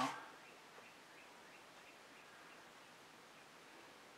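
Near silence: faint steady room hiss, with a few faint, distant bird chirps in the first few seconds.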